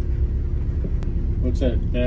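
MCI MC-5B coach's diesel engine idling at a standstill, a steady low rumble with a constant hum above it, heard from inside the driver's area.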